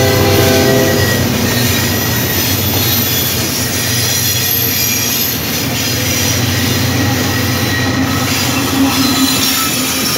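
A diesel locomotive horn ending about a second in, then several diesel-electric freight locomotives running past close by, with engine rumble and wheel-on-rail noise.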